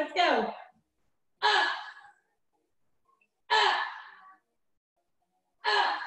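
A woman's breathy, voiced exhales of effort, four of them about two seconds apart, as she lifts and lowers through superman back-extension reps.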